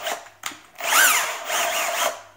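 Bosch GSB 18-2-LI Plus cordless drill's motor run briefly while a hand grips its keyless chuck. A whine rises and falls in pitch about a second in, after a short click.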